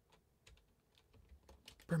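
A few faint computer keyboard keystrokes, short separate clicks, with a man's voice starting right at the end.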